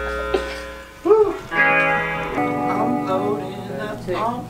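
Electric guitar played alone: held notes ringing out, with notes bent up and back down about a second in and again later.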